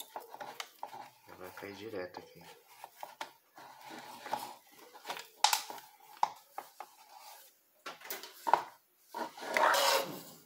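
Soldering iron and spring-loaded desoldering pump being handled over a circuit board, with scattered sharp clicks and knocks, two of them louder, about five and a half and eight and a half seconds in. Just before the end comes a louder, noisier rasp lasting under a second, as the pump is brought in.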